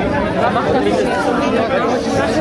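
Several people talking at once, their voices overlapping in a crowd.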